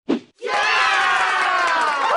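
Channel logo sting: a last short swoosh hit, then a loud chorus of voices cheering, held for about two and a half seconds with its pitch sliding down.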